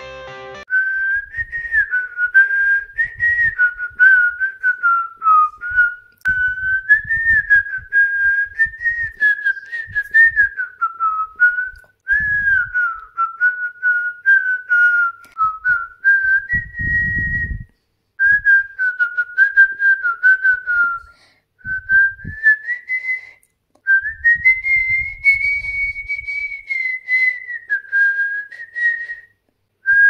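A person whistling a melody: a single pure tone that wanders up and down in short phrases with brief gaps. It starts about a second in, just as guitar music cuts off, and scattered low thumps sound beneath it.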